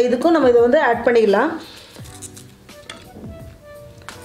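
A woman speaking for the first second and a half, then a quieter stretch with a few faint steady tones and light clicks.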